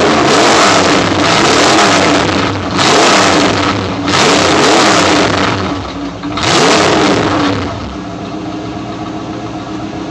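1982 Camaro's carbureted 305 cubic-inch small-block V8 crate engine being revved repeatedly, each rev rising and falling in pitch. It then settles to a steady idle about three-quarters of the way through.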